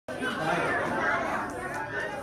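Many children's voices chattering at once, a general classroom babble with no single clear speaker.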